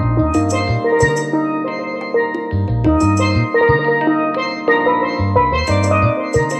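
Steel pan playing a melody over a laid-back, jazz-tinged backing track of bass and drums, with cymbal strikes every second or two.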